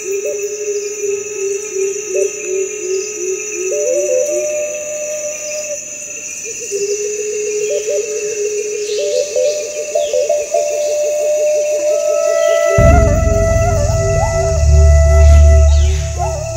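Background documentary music: a pulsing, wavering melody over a sustained high tone, with a deep bass layer coming in suddenly about 13 seconds in.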